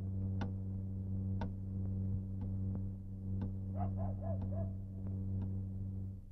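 Wall clock ticking once a second over a steady low drone. A short wavering whine comes about four seconds in.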